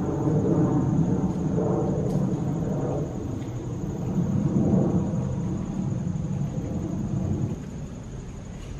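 Low steady rumble that drops in level near the end, under a thin, steady high drone of insects.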